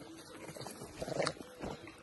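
Faint sounds from young monkeys running about at play, a few soft short sounds, loudest a little past the middle.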